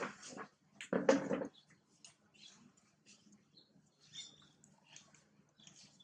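Macaque calls: two loud, harsh bursts in the first second and a half, then a few faint, high squeaks.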